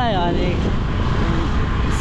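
Motorcycle riding along, its engine and the wind on the microphone making a steady low noise, with a voice speaking briefly at the start.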